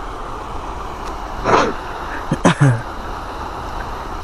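Steady rushing of water running over a low concrete spillway into the pool, with a low rumble beneath it. A few brief louder sounds break in about halfway through.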